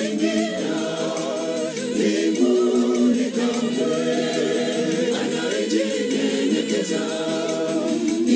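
A gospel choir singing a cappella in several voice parts, held chords moving together with no audible instruments.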